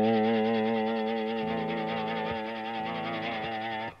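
Electric guitar played with a ball-tipped brass slide on the fifth string: one long slid note held with a gentle, wavering vibrato and slowly fading. The ball tip keeps the note clean, without the scraping a cut-edge slide can give.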